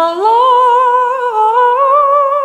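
A solo singing voice, unaccompanied, gliding up into a long high note and holding it with a slow vibrato, moving a little higher near the end.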